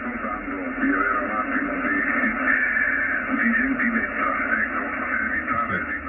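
An Italian station received on the 40-metre band, heard through the Icom IC-756 transceiver's speaker: a voice coming in quite well, with the narrow, thin sound of receiver audio cut off above about 3 kHz.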